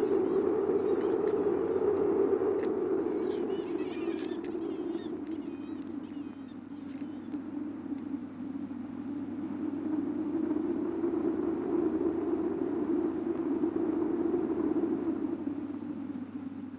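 Steady low rushing outdoor ambience that swells and fades, with faint high wavering bird calls about three to six seconds in.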